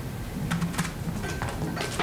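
Handling noise at a lectern: about four short rustles and clicks in two seconds, over a low steady room hum.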